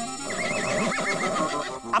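A comic reaction sound effect: a pitched call that wavers quickly up and down for most of two seconds, like a horse's whinny. It plays over steady held notes of background music.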